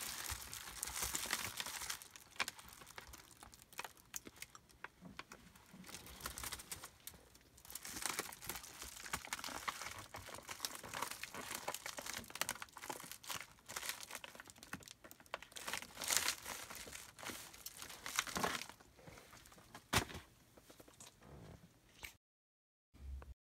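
Plastic wrap on a cardboard parcel crinkling and rustling in irregular bursts as it is handled, with one sharp click near the end.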